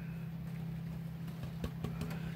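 A steady low hum with a few even pitch lines, with two faint short knocks near the end.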